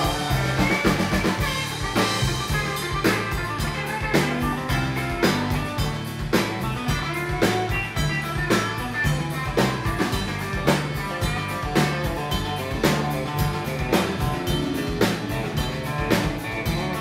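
A live country-rock band playing an instrumental break: drum kit keeping a steady beat under electric and acoustic guitars and a fiddle.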